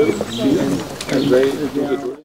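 A man talking in the open air, with pigeons cooing.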